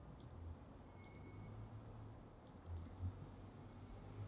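Faint clicks of a computer mouse, a handful spread unevenly across the seconds, over a low steady room hum.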